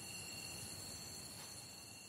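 Faint ambient background: a low steady hiss with two thin, steady high-pitched tones, the lower of which fades out near the end.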